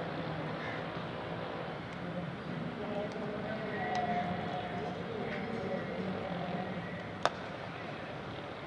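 Background murmur of voices from players and spectators around the ground, then one sharp crack a little before the end as a cricket bat strikes the ball.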